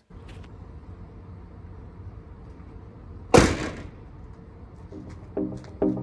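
A single sharp whoosh about three seconds in, over a low steady background rumble. Music with keyboard-like notes starts about five seconds in.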